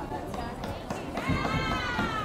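Indistinct voices of players and spectators on an outdoor field, with one raised voice calling out from about a second in.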